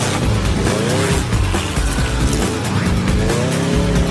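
The Maverick flying car's engine revs up twice, about a second in and again near the end, rising in pitch each time. Background music plays over it.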